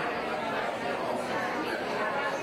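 Indistinct chatter of many people talking at once in a room, a steady murmur of overlapping voices with no single speaker standing out.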